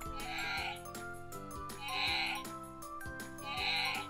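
Sound box in a Wild Republic Wild Calls black bear plush, squeezed to play a recorded black bear roar: three short calls of about half a second, roughly one and a half seconds apart.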